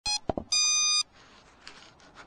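Electronic beeps from a small device, most likely the TinyGo 4K's onboard camera starting to record: a short beep, two quick clicks, then a longer steady beep of about half a second. Faint handling rustle follows.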